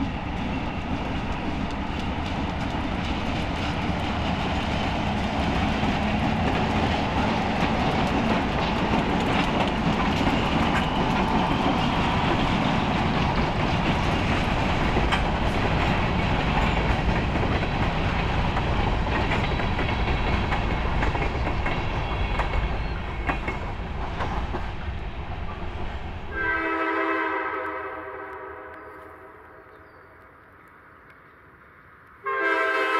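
Freight train led by Alco C430 and C424 diesel locomotives passing close by, followed by the steady rumble and clatter of covered hopper cars rolling over the rails. Near the end the rumble cuts out, and a chord-like locomotive horn sounds and fades away.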